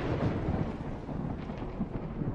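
Cinematic boom sound effect's long thunder-like rumbling tail, slowly fading.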